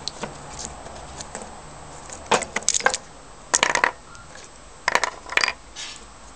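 Stacked steel transformer core laminations clinking together and against a workbench as they are handled and set down, in three quick clusters of clinks over the second half.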